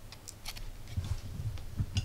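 A USB meter's plug being pushed into a USB socket by hand: a few light plastic clicks and scrapes, a couple of dull handling thuds, and a sharper click near the end as the plug seats.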